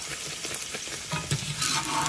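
A kochuri deep-frying in hot oil, sizzling steadily, with a few light knocks of a metal slotted skimmer against the pan as the kochuri is pressed and turned, about a second in and again near the end.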